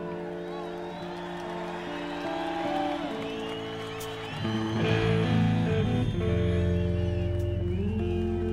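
Live rock band with electric guitars holding sustained notes and chords. About five seconds in, the sound fills out and grows louder with deep bass.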